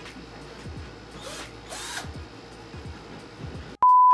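Power drill running while a backdrop is drilled into a wall, under background music with a repeating falling bass line. A loud steady beep cuts in just at the end.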